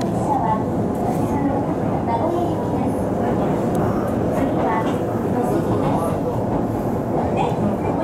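Inside a moving train: the steady rumble of the carriage running along the rails.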